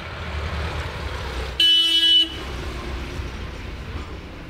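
A vehicle horn honks once, a steady tone lasting a little over half a second, about one and a half seconds in, over a low steady rumble of traffic.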